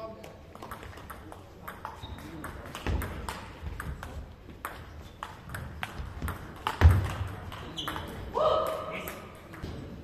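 Table tennis rally: the ball clicks off the bats and the table in a run of sharp ticks, with more clicks from other tables in the hall. A heavy thud comes about seven seconds in, and a short shout follows near the end of the rally.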